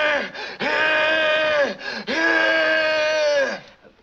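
A man's voice mimicking asthmatic wheezing: three long, held droning tones with almost no change in pitch, the second and third each lasting over a second.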